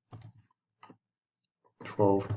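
A few short computer keyboard keystrokes clicking. A person's voice starts near the end.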